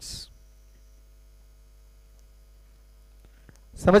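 Steady low electrical hum during a pause in a man's speech, with a short breathy hiss just as his sentence ends; he starts speaking again near the end.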